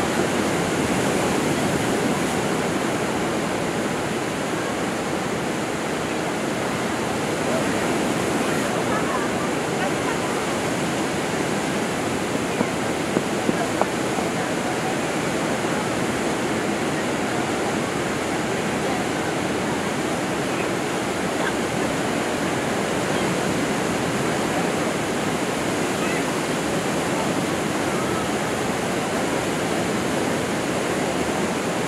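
Small lake waves breaking and washing on a sandy shore, a steady hiss of surf. Four brief sharp sounds come close together a little before halfway.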